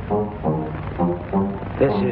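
Background score music: a brass instrument plays about four short, separate held notes.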